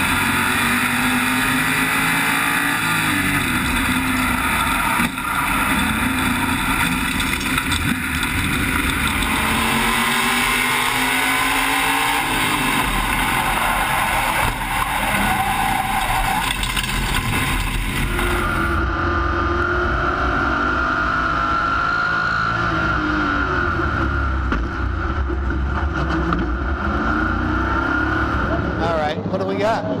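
SK Modified race car's V8 engine heard through an in-car camera, its pitch rising and falling as the car accelerates down the straights and lifts for the corners, with wind and other cars around it.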